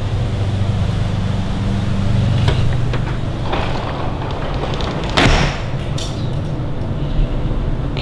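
A steady low hum under background noise, broken by a few clunks and short rushing sounds of a door being opened and shut. The loudest rush comes about five seconds in.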